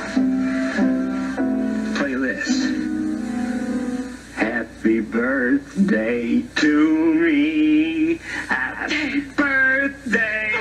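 Piano playing held chords; about four seconds in, a man starts singing over it with a wavering pitch.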